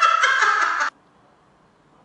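A woman laughing, which cuts off abruptly about a second in, leaving near silence.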